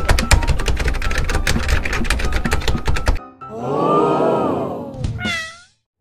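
A rapid drumroll-like run of beats for about three seconds, then a cat's long meow that rises and falls in pitch, followed by a short, higher mew that falls away.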